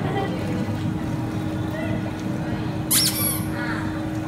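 Baby spa tub's bubble jets running: a steady churning of water over a constant pump hum. About three seconds in, a brief high-pitched squeal.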